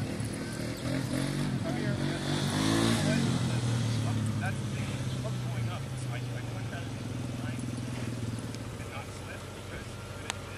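Land Rover engine running as the truck creeps over the top of a rock fin. It is revved up and back down in the first three seconds, then settles into a steady low drone that grows quieter toward the end.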